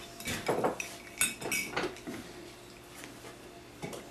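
A spoon clinking against a coffee cup as the coffee is stirred: a quick run of light clinks in the first two seconds, then one more near the end.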